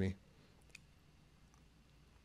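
Faint computer mouse clicks against near silence, the plainest one about three-quarters of a second in.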